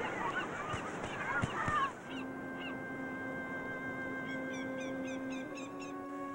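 Many overlapping high shouts of children at play, cut off abruptly about two seconds in. Then sustained soundtrack music notes, with a run of short, high chirps over them near the end.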